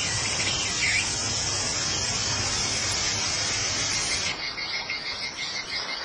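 Insects chirping in a steady high-pitched drone; about four seconds in, a rhythmic pulsing call joins in and carries on.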